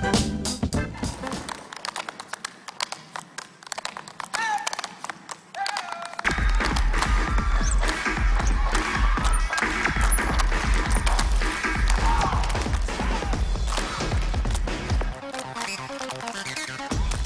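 Tap shoes clicking quickly on a stage floor with music. A loud, bass-heavy music track comes in about six seconds in, and the taps continue over it.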